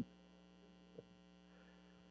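Near silence with a steady low electrical hum, and one faint click about halfway through.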